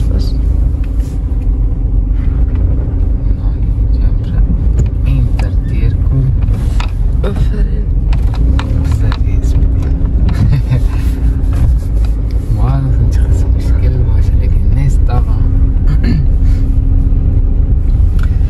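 Inside a Toyota car's cabin while it is being driven slowly: steady low engine and road rumble with a constant hum, with a few light knocks and clicks.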